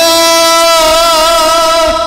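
Male trot singer holding one long sung note through the microphone, with a slight vibrato in the middle, over a backing track.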